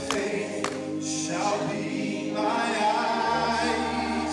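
Church choir singing a gospel song, with a man singing lead into a microphone over a held low bass note that shifts about three seconds in.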